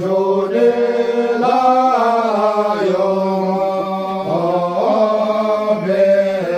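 Group of men chanting a traditional song together, in long held notes that bend slowly in pitch, without a break.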